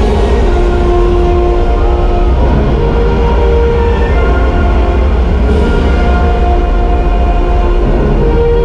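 Orchestral soundtrack of a flight-simulator ride film, long held notes over a loud steady low rumble.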